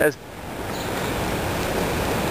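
Floodwater bubbling and rushing: a steady watery noise that sets in just after the start, which is probably the sewer backing up.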